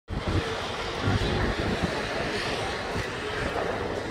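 Steady outdoor street ambience, a continuous noise bed of distant traffic, with faint voices of people standing close by.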